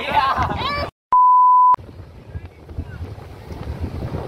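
A steady 1 kHz censor bleep, about two-thirds of a second long, cuts in just after a second of excited voices. After it, wind buffets the microphone with a low rumble.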